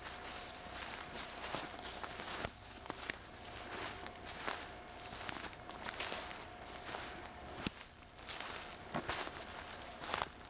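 Footsteps walking through the woods, rustling and crunching in the leaf litter at an uneven pace, with a sharp click about three-quarters of the way through.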